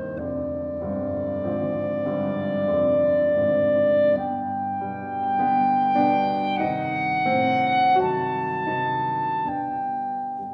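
Clarinet playing slow, legato melody notes over piano accompaniment as intro music: one long held note for the first four seconds, then a slow line of shorter notes.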